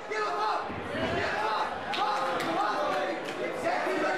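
Cageside voices of spectators and cornermen calling out and talking over one another during a grappling exchange, with a few short sharp knocks around the middle.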